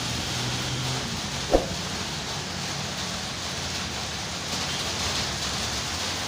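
Steady rain falling, with one short knock about a second and a half in.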